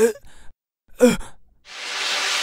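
A cartoon character's voice making two brief wordless vocal sounds about a second apart, then a long breathy exhale, a sigh, that begins near the end.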